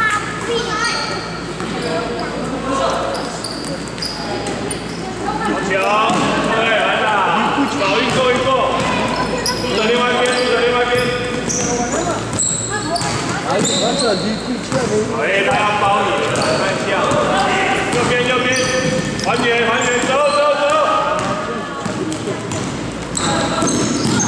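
Basketball dribbling and bouncing on a wooden gym floor, with shoes squeaking and voices shouting through much of it, echoing in a large hall.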